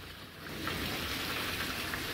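Water pouring out of a PVC pipe outlet and splashing steadily into the water of an aquaponics grow bed.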